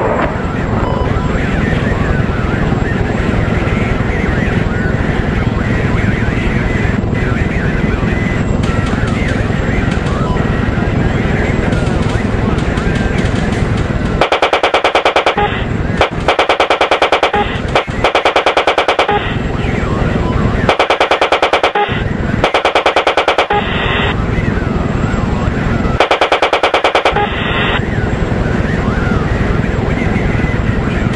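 A steady aircraft drone runs throughout. About halfway through, a series of bursts of rapid automatic gunfire begins, each about a second long, with short pauses between them.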